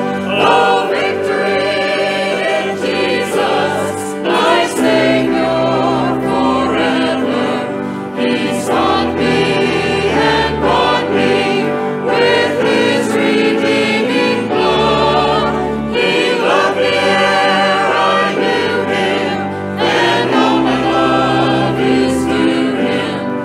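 A church choir singing a hymn together, with low sustained accompaniment notes that change with the chords beneath the voices.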